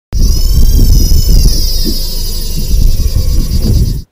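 An engine running loudly: a deep rumble under a high whine that slides down in pitch about a second and a half in. It starts abruptly.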